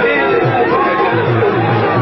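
Male voice singing a Sindhi song over a steady tabla rhythm.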